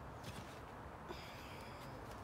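Faint outdoor background with a few light handling clicks. A thin, steady, high-pitched sound starts about a second in and lasts almost a second.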